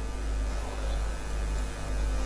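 Steady low hum with faint background noise of a large hall, no clear event standing out.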